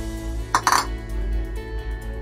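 Background acoustic guitar music, with two quick clinks of a bowl knocking against a stainless steel dish or the counter just over half a second in.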